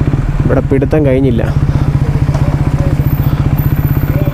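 KTM Duke 390's single-cylinder engine idling with a steady, even pulse.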